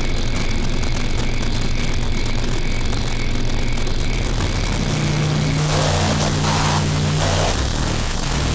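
Loud, steady static hiss over a low droning hum, the distorted sound of a degraded security-camera tape. About four seconds in, deeper drone tones swell, and near the end surges of harsher static come as the picture breaks up.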